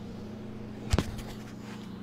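Refrigerator running with a steady low hum, and a single sharp knock about halfway through from the phone being handled.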